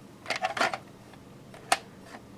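Plastic VHS cassette shell clicking as it is handled in the fingers: a short flurry of clicks about a quarter second in, then one sharp click near the end.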